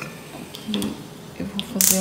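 Quiet kitchen with a woman's voice starting about halfway through. Near the end comes a short, sharp burst of clicking and hiss as the knob of a gas hob is turned to light a burner.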